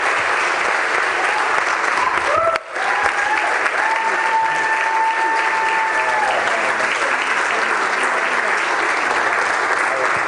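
Congregation clapping steadily. About four seconds in, a single long held call rises above the clapping for a couple of seconds.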